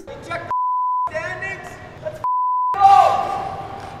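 Two censor bleeps, each a steady single-pitched beep about half a second long, cut into a man's speech. About three-quarters of the way in, a louder echoing sound starts and slowly dies away.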